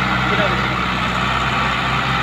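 Sonalika DI 60 RX tractor's diesel engine running steadily under load, pulling a fully loaded trailer.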